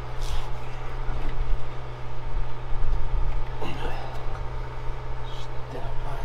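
Steady low drone of an engine running, with a short spoken word near the end.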